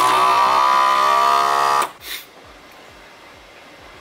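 FoodSaver vacuum sealer's motor running its seal cycle on a balloon's neck, a steady buzz that sags slightly in pitch and cuts off suddenly after about two seconds, followed by a brief hiss.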